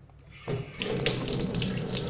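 Water from a kitchen tap running into a stainless steel sink, starting about half a second in and flowing steadily, splashing over a metal probe held under the stream.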